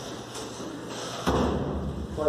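A single dull thump a little over a second in, followed by a short low rumble.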